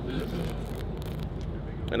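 A pause in speech filled by outdoor background: a steady low rumble and faint voices of people standing around, with a man's voice coming back in at the very end.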